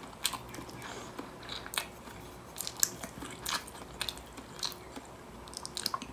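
Close-miked chewing and wet mouth sounds of stir-fried noodles being eaten, with scattered short sharp clicks and smacks.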